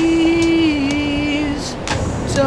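A young man singing one long held note without accompaniment, the pitch dipping slightly partway through before the note stops shortly before the end, over steady street noise.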